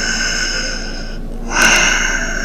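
A man's slow, audible yoga breaths close to the microphone: one long breath, a short pause, then a louder breath starting about one and a half seconds in.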